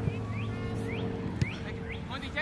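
A small songbird chirping repeatedly in short rising notes over quiet open-air ambience with a faint steady hum.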